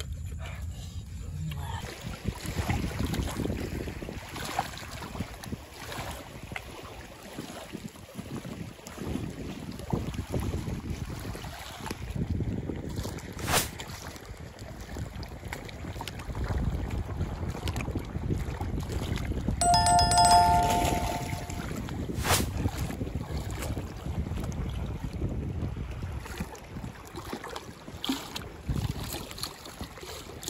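Wind buffeting the microphone over water splashing and sloshing around legs wading in shallow water. About two-thirds in comes a short bell-like chime.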